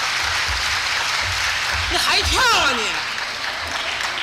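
Audience applauding after a song, a steady patter of clapping in a hall. About two seconds in, a voice cuts through with one long call that falls in pitch.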